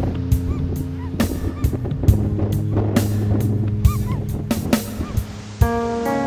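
Western gulls calling, repeated short honking calls, over soft sustained background music. Near the end the music changes to a passage of plucked notes.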